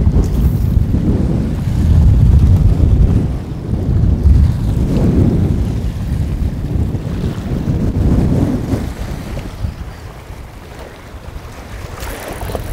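Strong wind buffeting the microphone in gusts, with choppy lake waves around the boat. The wind is heaviest a few seconds in and eases near the end.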